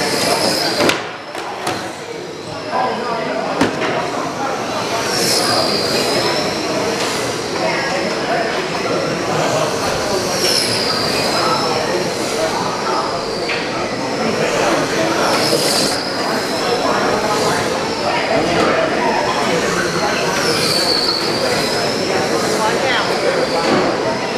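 A pack of radio-controlled oval-racing trucks with 21.5-turn brushless electric motors running laps on carpet: a steady, high-pitched whine of motors and drivetrains that swells and dips as the pack passes about every five seconds.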